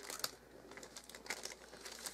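Wrapping paper crinkling and rustling as hands press and fold it around a gift box, in short crackly spells at the start, a little past halfway and again near the end.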